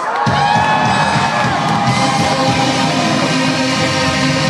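Live metalcore band playing loud through a club PA, the low end of the full band coming in just after the start, with the crowd cheering and shouting along.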